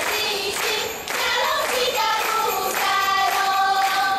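A group of voices singing a folk melody together, over a steady beat.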